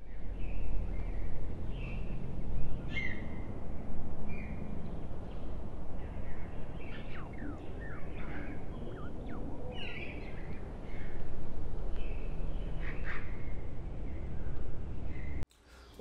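Outdoor ambience: birds chirping and calling in short notes and quick falling whistles, over a steady low background rumble.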